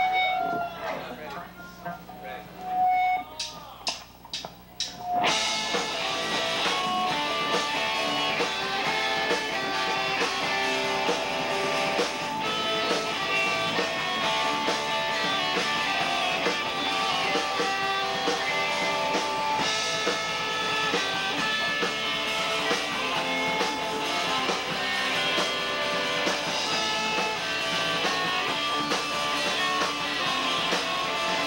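Live rock band with electric guitars and drums starting a song. A few stray guitar notes and a quick run of evenly spaced sharp clicks come first, then about five seconds in the full band comes in loud and keeps playing.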